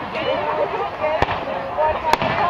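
An aerial firework shell bursting with one sharp bang about a second in.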